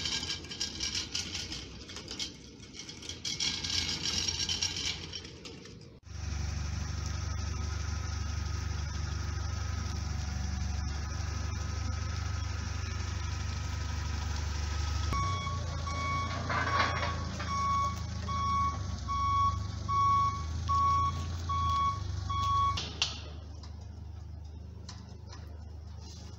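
Komatsu propane forklift running with a steady low engine hum, then its reversing alarm beeping evenly, about once a second, for some eight seconds as it backs up. The first few seconds hold a hissy clatter before the engine is heard.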